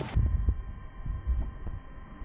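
Wind buffeting the camera microphone: a low, muffled rumble with irregular dull thumps.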